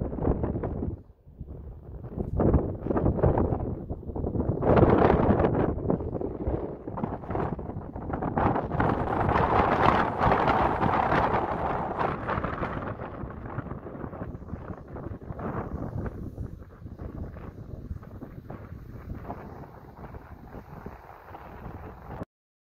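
Wind buffeting the microphone in uneven gusts, strongest from about five to twelve seconds in, then easing off.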